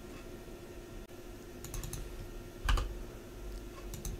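Computer keyboard keystrokes while editing code: a quick run of several key presses, then one louder keystroke about a second later.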